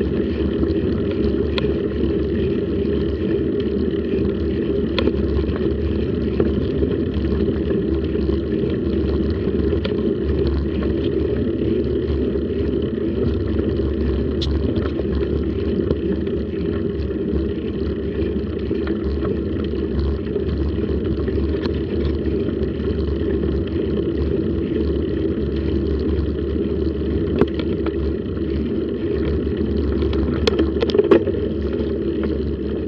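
Steady rumble of wind and road vibration on a bicycle-mounted action camera during a slow ride, with a few sharp clicks.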